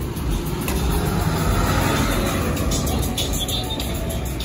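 A motor vehicle passing along the street: a low road rumble that swells through the middle and eases off toward the end.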